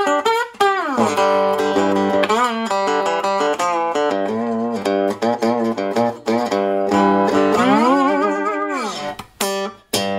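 Three-string cigar box guitar in open G tuning (G-D-G), amplified, played blues with a slide: picked notes with slides gliding up and down in pitch, and a long slide near the end.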